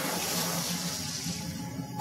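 A rushing, water-like sound effect swelling over low, dark background music.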